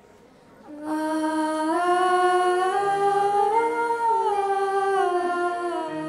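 Two girls singing long, wordless held notes in harmony into microphones, starting about a second in; one voice begins and a second joins a little later, the notes gliding smoothly between pitches.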